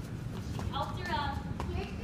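A high voice speaks or calls out briefly, from a little past halfway to near the end, over a steady low room hum. Light footsteps click on a hard tile floor.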